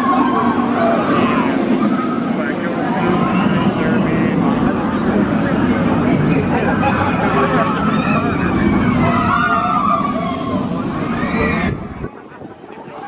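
Intamin launch roller coaster train running past on its steel track, with riders screaming and guests talking close by. The sound cuts off suddenly just before the end.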